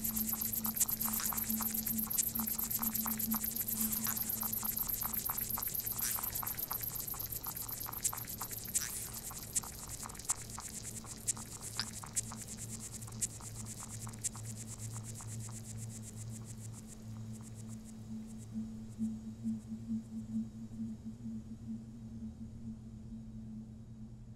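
Electronic soundscape: a steady low hum with a dense crackle of fine clicks and hiss over it. The crackle thins out and fades about two-thirds of the way through, leaving the hum with a few soft pulses near the end.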